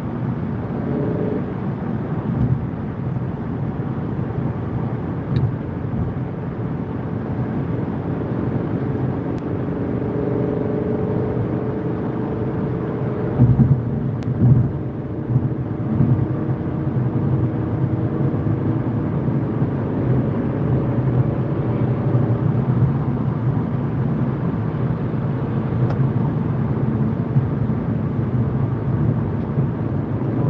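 Steady road and engine noise of a car cruising at motorway speed, heard from inside the cabin, with a couple of short louder thumps about halfway through.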